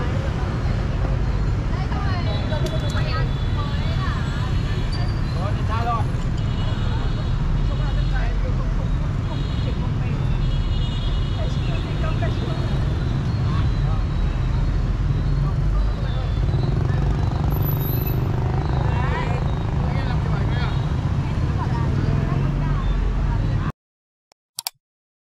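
Busy city street with a steady rumble of motorbikes and cars, people's voices close by and a few short high-pitched tones. It cuts off suddenly near the end.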